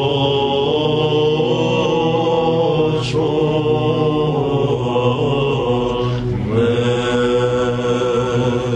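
Byzantine chant of a Lenten Vespers idiomelon: a male chanter sings long, ornamented melodic lines over a steady low held drone (the ison), with short breaks between phrases about three and six seconds in. These are the hymn's closing phrases.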